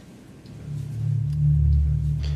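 Low, sustained background music drone fading in over the first second and then holding steady.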